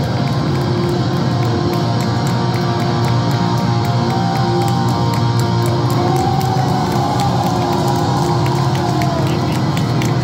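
Live metalcore band playing loud and steady through a concert PA, heard from within the audience: distorted guitars and drums.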